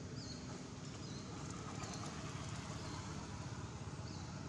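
Steady outdoor background noise with a low rumble, and a few faint, short high chirps scattered through it.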